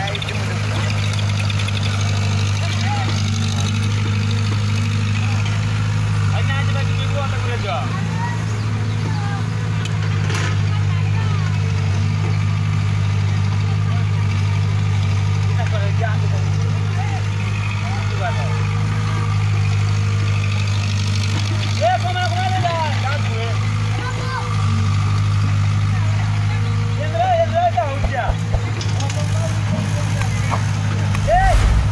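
Diesel engine of a CAT E70 tracked excavator running steadily as it digs and swings its bucket, a deep drone that grows louder about three-quarters of the way through.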